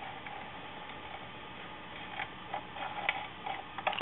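Small irregular clicks and taps of a curved sheet-metal patch being handled and fitted against a metal fuel tank, mostly in the second half, over a steady low shop hum.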